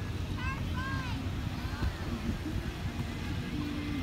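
Steady low rumble of a car creeping along with its engine running, heard from inside the cabin. A distant voice calls out briefly near the start.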